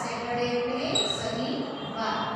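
A woman's voice speaking, reading aloud, with a brief high ping about halfway through.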